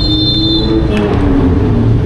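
Street traffic: vehicle engines running steadily, with a high, steady squeal that stops about a second in.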